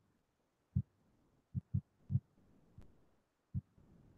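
Five short, faint, low thumps at irregular intervals, with near silence between them.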